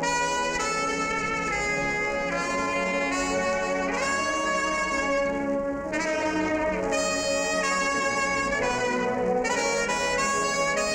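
Solo trumpet playing a melody in held notes, some scooped up into pitch, over a wind band accompaniment of saxophones and trombones.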